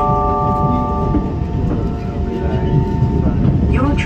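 Kawasaki C151 metro train running, heard from inside the car: the electric traction motors whine in several steady tones that step and fade out in the first half, over a continuous rumble of wheels on the rails.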